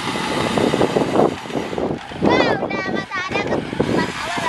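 A child's high-pitched excited voice, squealing and calling out twice about halfway through, over a steady rough noise.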